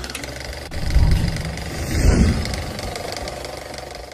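A deep low rumble that swells about a second in and again about two seconds in, then fades away toward the end.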